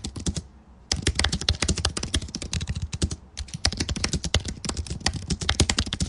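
Fast typing on a computer keyboard: rapid runs of key clicks, broken by short pauses about half a second in and just after three seconds.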